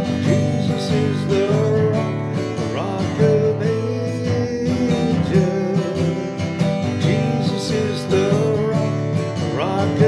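Acoustic guitar strummed steadily, with a man's voice singing along over it in long held notes.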